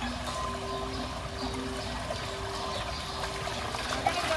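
Shallow stream water flowing and trickling over stones, under soft background music holding long steady notes.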